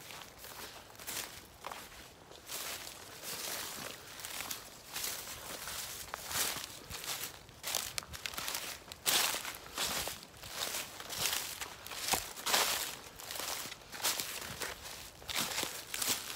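Footsteps through dry pine needles and leaf litter at a steady walking pace, going uphill.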